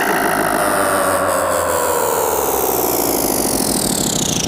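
Buzzy, engine-like sound effect used as a transition in an electronic DJ mix, its whole stack of tones sweeping slowly and steadily down in pitch over a low steady rumble. Rhythmic music starts coming back in near the end.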